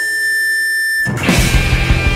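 Noise-rock band recording: the drums and bass drop out and a single sustained high tone rings on alone for about a second, then the full band comes back in.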